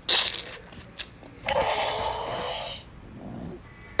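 A rough, unpitched growl-like dinosaur roar lasting just over a second, starting about a second and a half in, voicing a toy dinosaur in play. A short hiss comes at the start and a click about a second in.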